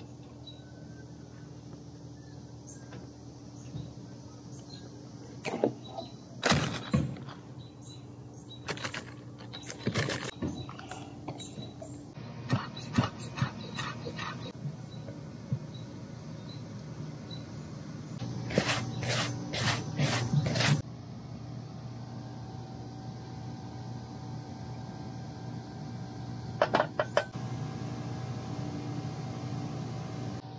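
Scattered knocks and clatter from food preparation: a plastic bowl and a knife handled on a wooden cutting board while a salt, sugar and dill cure is made. The knocks come in short clusters over a low steady hum.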